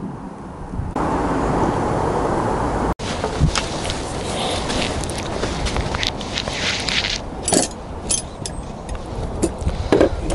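Steady outdoor background noise, with a louder even rush like wind on the microphone for a couple of seconds. It breaks off suddenly and gives way to irregular rustling, scraping and a few sharp clicks as the dry roots and shears are handled.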